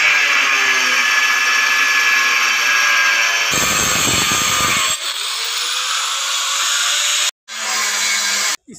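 Hand-held angle grinder with a cutting disc running and cutting a large tile, a loud steady high whine. A rougher low rumble joins for a second or so midway, the pitch shifts as the load changes, and the sound cuts off suddenly near the end.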